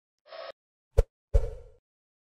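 Intro sound effect for a logo reveal: a brief soft rush, a sharp click about a second in, then a louder, deeper hit that fades out quickly.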